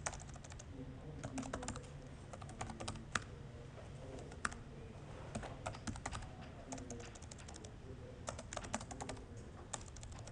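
Typing on a laptop keyboard: quick runs of key clicks in uneven bursts with short pauses between them, picked up faintly by a room microphone.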